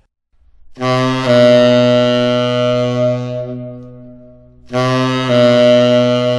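Tenor saxophone playing a half-step approach figure twice: a short tongued note on D slurred down into a long held C♯, the second time still sounding at the end. The grace note is tongued and the target note is not.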